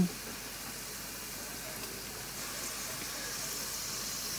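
Masala frying in a steel pan, a faint steady sizzle that grows slightly louder from about halfway as spooned yogurt goes into the hot pan.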